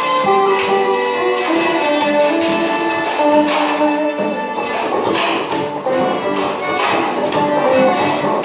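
Hurdy-gurdy playing a stepping melody over a steady drone, with a plucked string instrument adding sharp strummed strokes.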